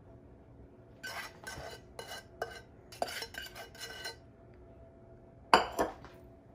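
A utensil scraping the last of a thick brown-sugar-and-butter glaze out of a saucepan, in a run of short scrapes and clinks against the pan, then one loud clank near the end.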